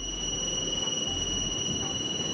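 Electric motor and centrifugal pump of an ultrasonic cavitation test rig running: a steady high-pitched whine over a dense rushing noise.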